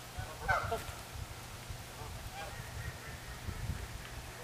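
Waterfowl honking: a loud cluster of calls about half a second in, then a few fainter calls around two and a half seconds in.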